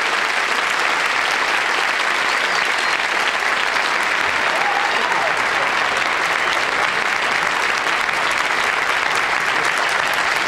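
Studio audience applauding, steady and sustained without a break.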